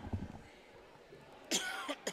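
A man coughs once, loud and harsh, about a second and a half in, from someone under the weather. A few soft low knocks come at the start.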